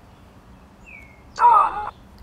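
TD Snap's auditory-touch preview: an app voice, set to a weird-sounding voice, speaks one short button label about one and a half seconds in. A faint short falling tone comes just before it.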